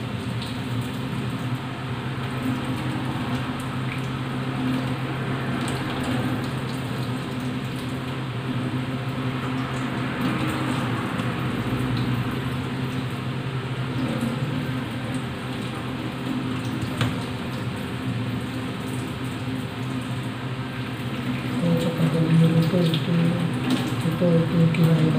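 Kitchen tap running steadily into a steel sink while raw squid are rinsed and cleaned by hand, over a steady low hum.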